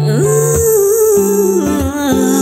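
A woman's voice sings a wordless, hummed intro line over an acoustic guitar backing track. It rises into a held note, then slides down through lower notes in the second half.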